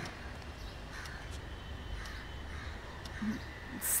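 Faint bird calls over a steady low background hum.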